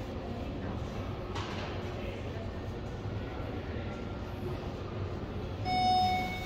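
Steady background hum with faint music; near the end an elevator arrival chime rings once, a clear ding with bright overtones, signalling a car arriving at the floor.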